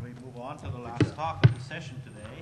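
Indistinct talking away from the microphone, broken by three sharp knocks, the loudest about one and a half seconds in.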